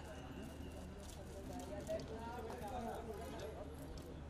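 Indistinct chatter and calls from a crowd of photographers, with camera shutters clicking repeatedly.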